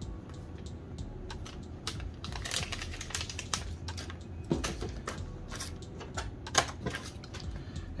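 Irregular light clicks and rustles of hands handling laptop RAM sticks and their anti-static bags, with a few sharper clicks.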